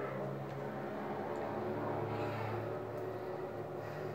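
A steady low motor hum with several held pitches, swelling slightly about two seconds in.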